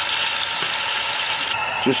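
Venison liver slices frying in oil and butter alongside onions in a cast-iron skillet on high heat: a steady sizzle that cuts off abruptly about one and a half seconds in.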